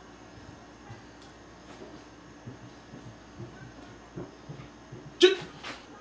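Faint scattered knocks and scrapes, then about five seconds in a single sharp dog bark followed by a weaker second one.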